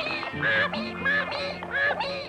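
Cartoon burro foal braying: a quick run of short, high calls that rise and fall, about five in two seconds, over a cartoon orchestral score.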